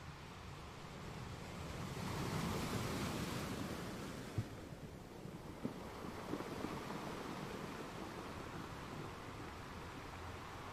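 Wind rushing over the microphone, swelling for a couple of seconds and then easing, with a few light knocks in the middle.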